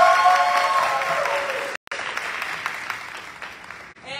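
Audience applause with held cheering voices over it for about the first second and a half. After a brief dropout the clapping goes on, slowly fading.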